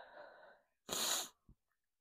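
A person's breath sounds: a soft breath out that fades over the first half second, then a single short, sharp burst of breath about a second in.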